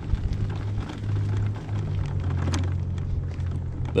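Mobility scooter's electric drive motor humming steadily as it rolls along, under a gritty crackle of its tyres on the asphalt, with one sharper click about two and a half seconds in.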